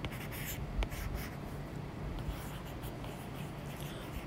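A stylus tip tapping and scratching faintly on a tablet's glass screen in short, irregular strokes as words are handwritten.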